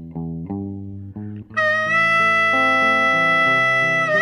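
Slow blues music: a guitar plays a few picked notes over a bass line, then about one and a half seconds in a harmonica enters with a long held note.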